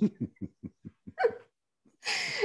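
A woman laughing: a run of short breathy "ha"s, about five a second and fading, with one louder "ha" a little past halfway.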